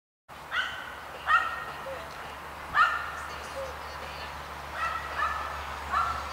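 A dog held on the leash at the start of a chase test, giving about five short, high-pitched yelps at uneven intervals: eagerness to be released after the lure.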